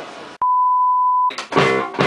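A single steady electronic beep, one pure tone cut in abruptly and held for just under a second, then guitar music with drums starting about a second and a half in.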